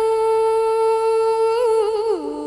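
A woman's voice holding one long sung or hummed note in cải lương style, steady in pitch, with a brief wavering ornament near the end.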